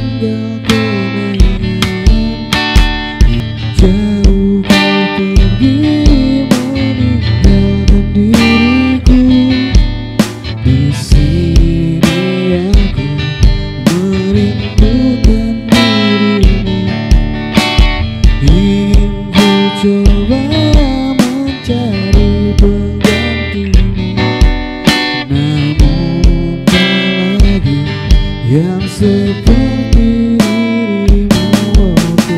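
A song played through: a strummed acoustic guitar and a man's singing voice over a steady drum beat of about two strokes a second.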